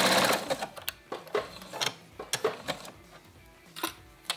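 Domestic sewing machine running at speed as it zigzag-stitches clear elastic onto knit fabric, stopping about half a second in. Scattered quiet clicks follow.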